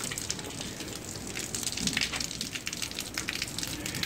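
Handling noise from a camera phone being moved around: irregular faint crackles and rustling on the microphone.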